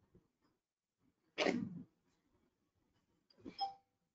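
Quiet call audio broken by two short sounds: a brief noisy burst about a second and a half in, and near the end a shorter one carrying a brief ringing tone.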